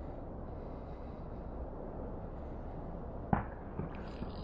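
Steady low rumble of outdoor background noise, with one sharp click a little over three seconds in.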